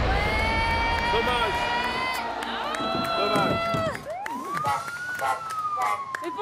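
Bowling ball rolling down a lane, a low rumble, with long held tones over it. The rumble stops about four seconds in and a long tone rises and then slowly falls as the ball ends in the gutter.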